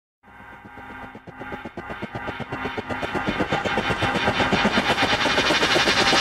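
A rapid, evenly pulsing sound over held tones that swells steadily louder from silence, the build-up of an opening intro.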